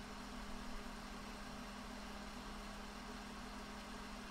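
Faint steady hiss with a low steady hum: the room tone and noise floor of a home podcast microphone, with nothing else sounding.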